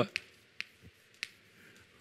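Chalk striking and dragging on a blackboard as letters are written: four short, sharp clicks spread over two seconds.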